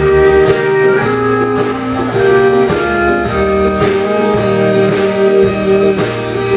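Live country band playing an instrumental break: pedal steel guitar holding long notes with electric guitar, over a steady drum beat.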